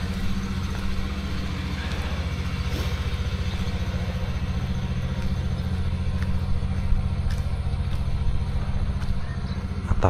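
A steady low drone with a fine, rapid, even pulse, like an engine running at a constant speed.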